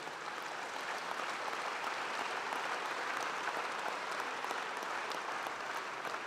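A large seated audience applauding steadily, many hands clapping at once.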